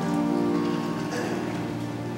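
Soft background church music: sustained instrumental chords held steady, with a chord change at the start. A light rustle of the congregation standing and handling Bibles lies underneath.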